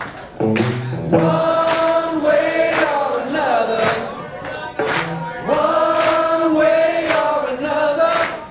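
Live rock song: several voices singing a long, drawn-out chorus together over an electric guitar, with handclaps about once a second.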